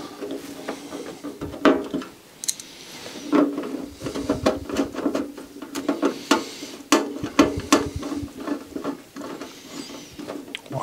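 Hands fitting parts onto a Samsung CDH 44R CD player's casing during reassembly: scattered clicks, taps and knocks of plastic and metal, a few of them sharper, over a faint steady hum.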